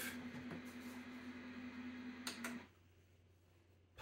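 Faint hiss of static with a low steady hum from a small portable black-and-white TV, then two quick clicks about two and a half seconds in, after which the sound cuts off to near silence as the set leaves the static.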